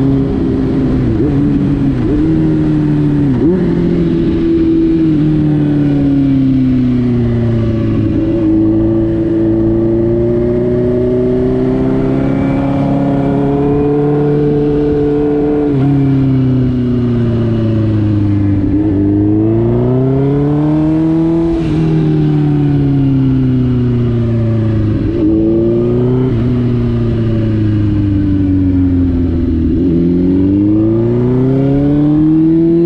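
2005 Suzuki GSX-R1000 K5 inline-four engine under way, its note rising and falling with the throttle, with several sudden jumps in pitch at gear changes, over steady wind and road noise.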